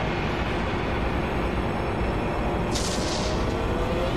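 A rumbling transformation sound effect from the show's soundtrack, as flames rise around the figure, with a short hiss about three seconds in, under faint music.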